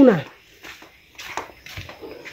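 A woman's voice trails off with falling pitch at the start, then it is quiet apart from a few faint scattered ticks and brief rustles.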